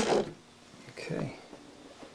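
A single sharp click as the timer dial on a battery charger is turned to off, followed by low room quiet.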